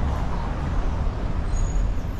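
City street ambience: a steady low rumble of road traffic with some wind on the microphone, and a few faint high chirps near the end.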